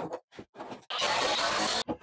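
Cordless drill driving a three-inch screw into a 2x4 frame joint, running for just under a second in the second half and stopping abruptly, after a few lighter knocks and handling sounds.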